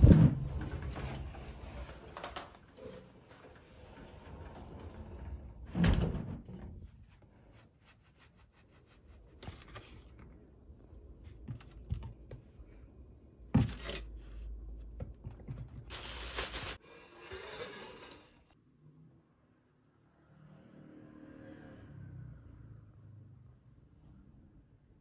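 Household handling sounds in a small room: a few sharp knocks and thuds, one right at the start and others about six and thirteen seconds in, with short bursts of rustling between them.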